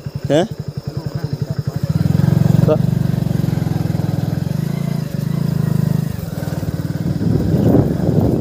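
Motorcycle engine running at low speed with an even pulsing beat, pulling harder and louder about two seconds in and easing back down near six seconds as the bike rides a rough dirt track. A single knock comes about a third of the way through.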